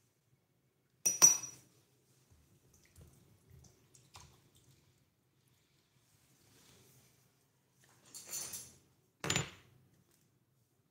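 Miniature kitchenware being handled: a sharp, ringing clink about a second in, a few faint taps, a short scrape near the end and a final clink.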